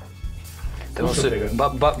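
Man's voice talking over quiet background music, the speech starting about a second in.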